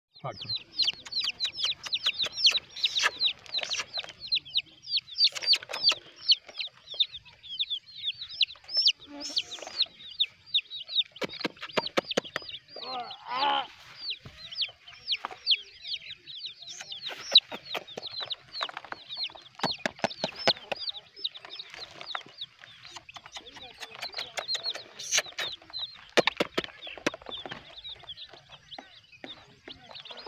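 A group of young chicks peeping continuously, many short, high, falling chirps a second overlapping one another. About halfway through comes a brief lower, wavering sound.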